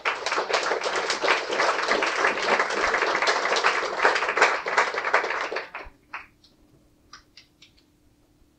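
Small audience clapping: a few claps that thicken into steady applause, which breaks off about six seconds in, leaving a few scattered last claps.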